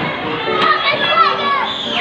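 Children's high-pitched voices calling and chattering, the hubbub of kids playing in a busy indoor play area.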